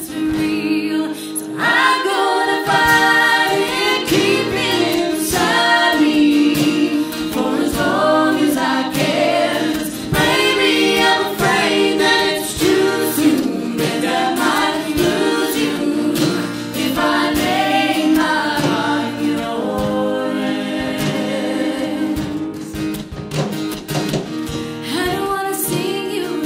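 Live acoustic folk-pop song: a woman singing lead with other voices joining in harmony, over acoustic guitar and a beat played by hand on a tall drum.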